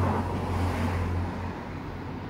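Steady low rumble of motor-vehicle noise with a constant low hum underneath, easing off slightly in the second second.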